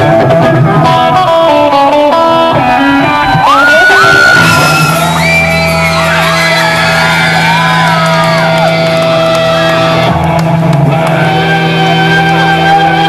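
Pop-rock music with electric guitars. From about four seconds in, a lead line of sliding, bent notes rises over steady low bass notes.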